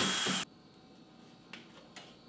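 Power screwdriver running as it backs a screw out of a refrigerator's lower rear panel, cutting off about half a second in. A few faint clicks follow.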